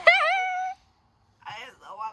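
A woman's high-pitched squealing cry, held for under a second, in pain from the burning heat of the very hot chip she has just eaten; after a short pause, wavering laughing moans follow.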